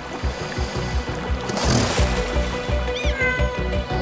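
Cartoon background score with a steady pulsing beat, a short rushing swoosh about halfway through, and a brief high squeak about three seconds in.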